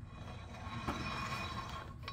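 Front wheel hub bearing of a 1998 Dodge Ram Cummins turning as the brake rotor is spun by hand: a steady rough whir with faint high whining tones, with a small click about a second in. This is the bearing's 'little noise', the sign of a failing wheel hub assembly that the owner means to replace.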